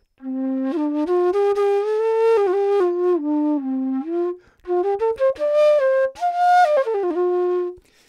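Hindustani bansuri in F, a bamboo transverse flute, playing two short unaccompanied melodic phrases. The first climbs stepwise and falls back. After a brief breath, the second rises higher before settling on a held note near the end.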